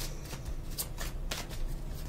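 Tarot cards being handled, giving several short, sharp card clicks spread through the moment.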